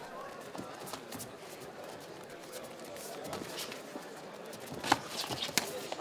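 Indoor fight-arena ambience: crowd murmur and scattered shouts, with light thuds of bare feet moving on the cage canvas. A sharp smack about five seconds in, followed by a few smaller ones, as strikes land in a close exchange.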